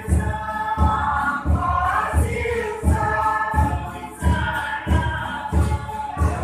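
A group of voices singing together, with a steady low beat about every three quarters of a second under the singing.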